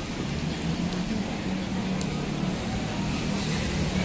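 City street traffic noise with a steady low engine hum from a car running close by.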